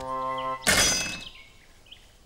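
A held note of background music, then about two-thirds of a second in a sudden metallic clang with a short high ring, the sound of a railway semaphore signal arm dropping.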